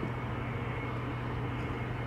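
Mitsubishi F-2 fighter taxiing at a distance: a steady low engine hum under a thin, constant high whine.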